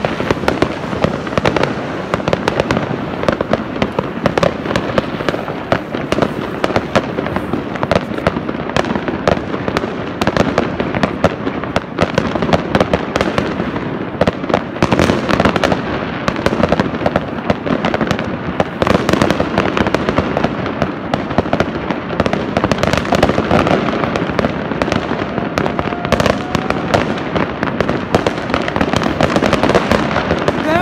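Many fireworks going off at once: a dense, continuous crackle of bangs and pops that never lets up.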